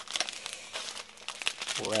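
Crinkling of small plastic bags of diamond-painting drills being handled, an irregular run of quick crackles and rustles.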